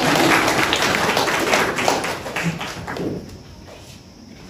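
Audience applauding, the clapping fading out about three seconds in.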